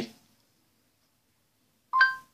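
Near silence, then near the end a short beep of two steady tones from the phone's Google voice-input prompt as it stops listening.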